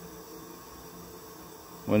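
Propane burners of a pig roaster running steadily: a faint, even rushing noise. A man's voice comes in near the end.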